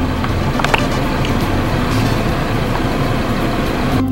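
Steady rushing noise with a low rumble beneath it.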